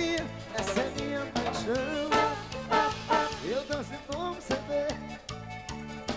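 Live forró band playing an instrumental passage: accordion melody over bass and drum kit with a steady dance beat.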